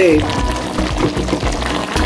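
Background music over a pot of meat stock bubbling at a boil.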